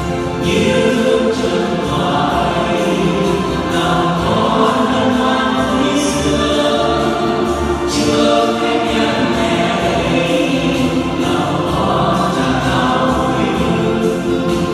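Choir singing sacred music without a break.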